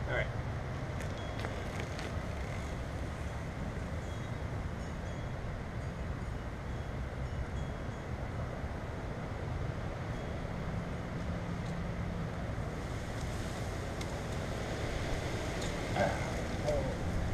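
Steady outdoor background noise: a low rumble under an even hiss, with a few faint clicks in the first couple of seconds and a few short, faint high chirps.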